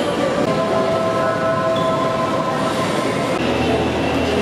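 A loud, steady, machine-like noise of rumble and hiss, with a few held whining tones running through it.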